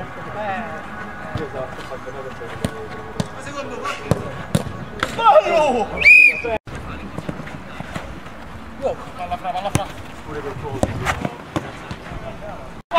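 Players shouting to each other during a five-a-side football game, with sharp thuds of the ball being kicked several times.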